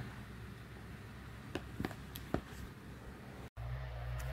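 Faint room tone with a few small, sharp clicks from a snub-nose revolver being handled. Near the end the sound cuts to a steady low outdoor rumble.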